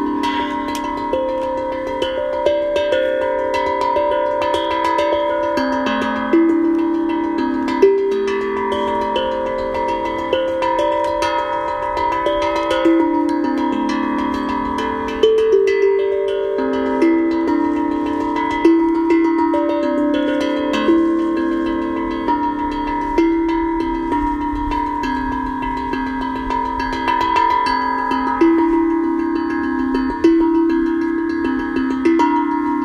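Steel tongue drum played in a slow improvisation: single struck notes ring on and overlap, the melody stepping up and down, with a new note about every half second to a second.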